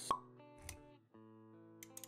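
Sound effects of an animated logo intro over music: a sharp pop about a tenth of a second in, a short low thump just after half a second, then held music notes return with a few light clicks near the end.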